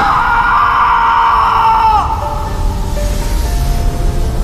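A man's long, anguished scream of "No!" (不要), held for about two seconds and dropping in pitch as it ends, over dramatic background music.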